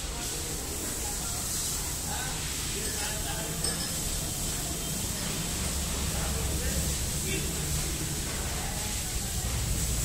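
Faint, indistinct voices over a steady low background hum, with no single distinct event.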